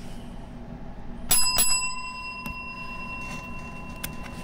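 A small bell struck twice in quick succession about a second in, then ringing on with a clear tone that slowly fades: the bell signalling the start of the bout.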